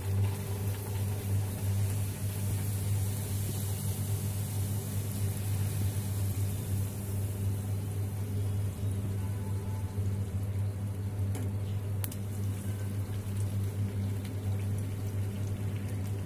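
A hing kochuri deep-frying in hot oil in a wok: steady sizzling, over a constant low hum.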